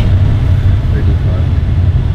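Loud, steady low rumble of wind buffeting the microphone, with no clear tone in it.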